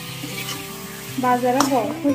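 Chicken pieces frying in a metal kadai, stirred and scraped with a metal spatula. Background music with a singing voice comes in just past halfway.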